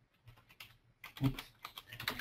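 Typing on a computer keyboard: a quick run of key taps.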